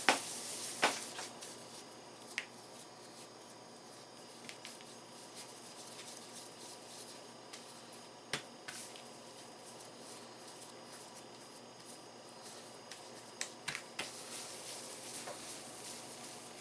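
Faint handling noises: a few scattered soft clicks and taps as hands roll pieces of soft bread dough into balls on a cloth-covered table, over low room hiss.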